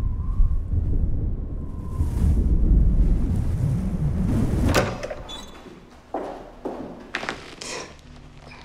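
Low, steady wind noise that cuts off suddenly with a sharp knock about five seconds in, followed by a few short thuds and rustles near the end.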